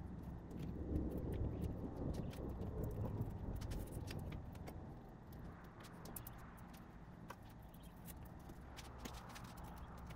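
Faint rustling and rubbing as a vinyl-and-velcro strip on a soft-top frame's front rail is handled and trimmed with a knife, busiest in the first few seconds, with scattered small clicks.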